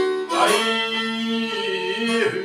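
Albanian folk song played on violin and a çifteli long-necked lute, with a man singing; a steady held note sounds through the middle.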